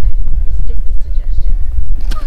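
Wind buffeting the camera microphone: a loud, uneven low rumble throughout.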